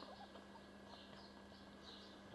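Near silence: room tone with a faint steady hum and a few faint light clicks near the start.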